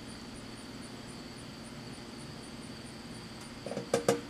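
Outdoor background of insects chirping: a steady high trill with a faint pulse about three times a second. A short click comes near the end.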